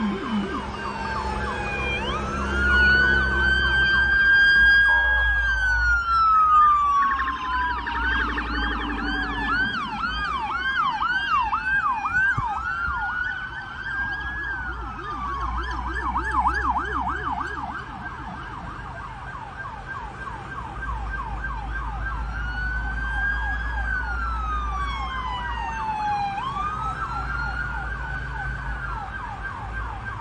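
Police car sirens on a highway, switching between a slow rising-and-falling wail and a rapid yelp, over the low rumble of road traffic.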